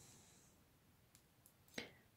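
Near silence: room tone, with a faint click a little after a second in and a short soft sound near the end.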